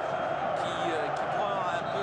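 Large stadium crowd of football supporters cheering and shouting in celebration of a goal: a steady, dense mass of voices.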